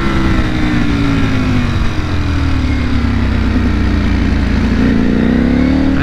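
2021 Ducati Panigale V4 SP's V4 engine, running a Stage 2 ECU flash, heard from on board while riding. The engine note falls steadily for the first few seconds, then climbs again near the end.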